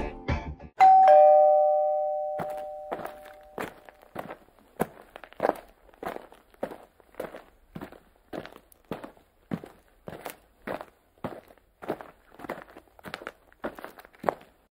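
A two-note chime rings once and fades away, then footsteps walk at an even pace, a little under two steps a second.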